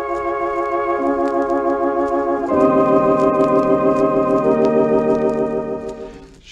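Organ holding slow sustained chords, changing chord about a second in and again about two and a half seconds in, then fading out near the end. Faint record-surface clicks run through it.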